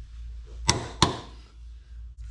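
Click-type torque wrench clicking twice in quick succession, about a third of a second apart, a little after the start: the subframe bolt has reached its set torque of 74 ft-lb.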